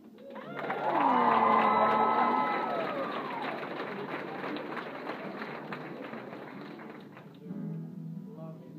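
A group of voices cheering and whooping, with sliding held pitches for the first few seconds, over applause that fades gradually.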